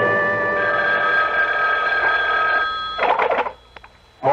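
A held musical chord from a radio-drama scene-change bridge sounds, then fades just before three seconds in. A telephone bell then rings briefly, followed by a couple of faint clicks.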